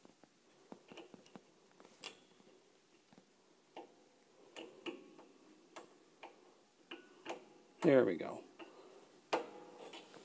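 Scattered light clicks and taps of steel piano wire against a tuning pin as a new string end is fed into the pin's hole on a console piano. A short vocal sound from the worker about eight seconds in is the loudest thing.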